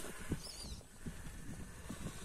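Faint, irregular knocks and scrapes of Axial Capra 1.9 RC rock crawlers' tyres and chassis on rock as they crawl slowly.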